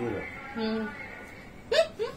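A woman's single short, sharp hiccup while eating, near the end, after a brief hum with her mouth full.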